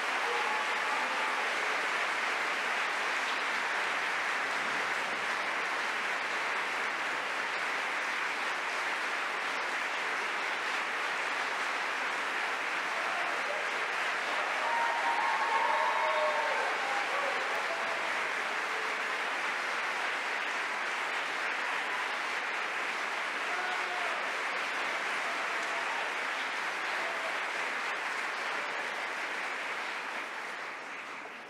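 Concert audience applauding steadily, swelling a little about halfway through, with a few faint calls or cheers.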